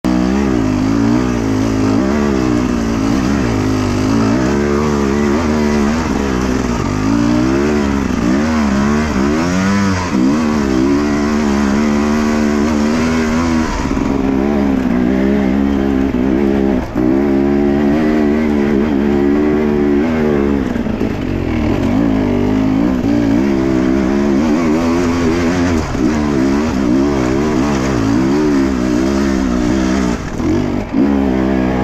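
Enduro dirt bike engine heard from on board, revving up and down constantly as the throttle is worked over rough trail. The sound drops briefly about seventeen seconds in.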